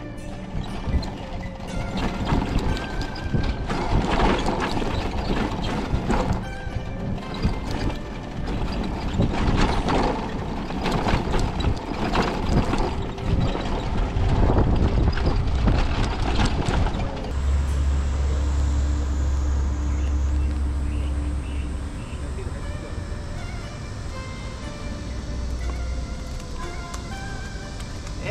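Electric motorcycle ridden over a rough dirt road, the bike knocking and rattling over the bumps with wind on the microphone. Past the halfway point a steady low wind rumble takes over.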